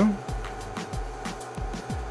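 Steady electrical hum from an amplifier test bench, with a few faint clicks and soft thumps as the amplifier dyno's front-panel buttons are pressed to set up a 2-ohm run.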